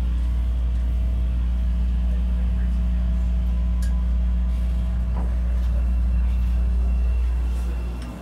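CTA 5000-series rapid-transit car running in the subway, a steady low rumble with a faint hum over it, pulling away from the station. The rumble drops off briefly near the end.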